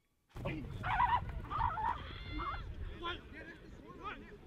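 After a brief silence, a sudden start of outdoor practice-field sound: indistinct shouts and calls from football players and coaches, over a low rumble.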